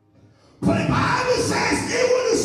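A man's voice shouting loudly into a microphone over a PA, starting suddenly about half a second in after a brief near-silence.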